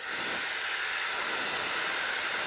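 Dyson Airwrap hair dryer attachment blowing air on its highest fan setting: a steady, even hiss.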